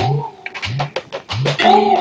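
Comic film background music: a melody line over low, pitch-bending drum strokes roughly every 0.6 s. The melody stops about half a second in, leaving only the drums, and comes back near the end.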